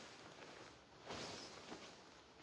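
Faint rustle and swish of a pure silk sari being unfolded and shaken out, with a louder swish a little after a second in.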